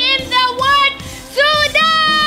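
A woman's voice at a stage microphone, exclaiming in short, very high-pitched, sing-song phrases, then breaking into a long, drawn-out shout of 'Sudan' near the end.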